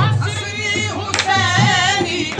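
Qawwali music: ornamented, wavering male singing over harmonium and percussion, with sharp strokes about a second apart.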